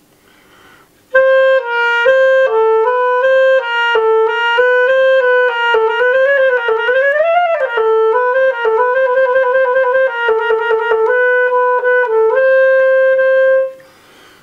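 A German-system clarinet, the Schwenk & Seggelke Model 2000, played solo to test its freshly adjusted keywork: a line of quick notes in the middle register, starting about a second in, with a wavering rise and fall in the middle and rapid note changes later, ending on a held note.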